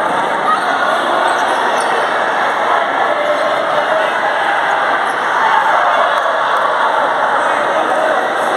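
Reverberant din of voices in an indoor gymnasium during a futsal game, with the occasional thud of the ball being kicked and bounced on the court.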